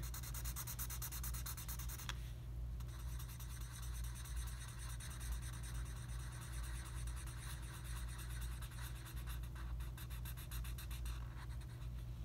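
Black felt-tip marker scribbling on paper in quick, short strokes as it colours in a solid area. There is a brief pause about two seconds in, and the scribbling stops just before the end.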